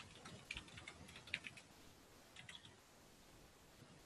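Faint computer keyboard typing: a quick run of keystrokes, a pause, then a few more keystrokes.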